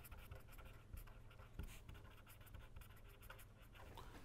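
Faint scratching of a pen writing on paper in short strokes.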